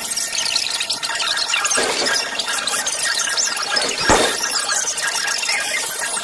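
Sped-up, distorted cartoon soundtrack: dense high-pitched squealing and chattering, with a thump about four seconds in.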